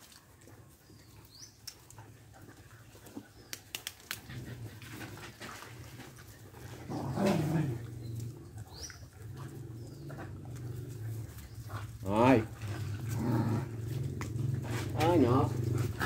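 Dogs giving a few short, wavering whines while being petted and crowding round, over a low steady engine hum that comes in about four seconds in and grows louder.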